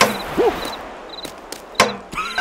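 Cartoon hit sound effects: a sharp whack at the start and another just before the end, with a short squeaky vocal grunt in between, as a bug character swings a metal spoon.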